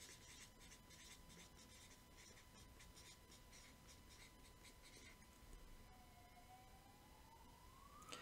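Faint strokes of a felt-tip marker writing on a paper notepad, mostly in the first five seconds. Near the end a faint distant siren begins, rising in pitch.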